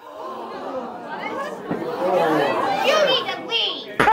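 Crowd chatter: several voices talking over one another in a room full of people.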